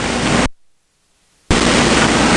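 Steady hiss of the recording's background noise, cut off to dead silence about half a second in and returning abruptly a second later, where one audio clip is spliced to the next.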